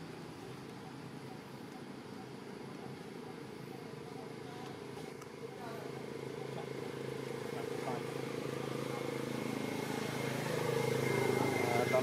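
A steady motor hum that grows gradually louder, with faint voices coming in near the end.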